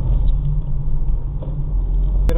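Steady low engine and road rumble inside the cabin of a moving car, picked up by a windscreen dashcam.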